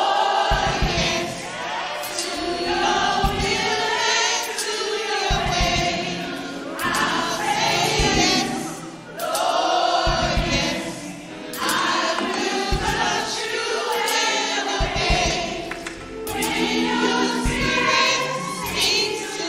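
A church praise team singing a gospel song together with instrumental accompaniment, phrase by phrase with short breaths between lines.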